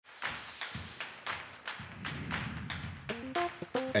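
Intro theme music with a steady beat of about four crisp percussion hits a second. About three seconds in, a short melody of quick stepped notes comes in.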